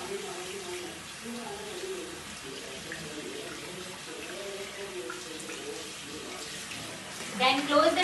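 A bathroom tap running steadily into a washbasin while hands are rinsed under the stream, with a faint voice underneath. A voice speaks up louder near the end.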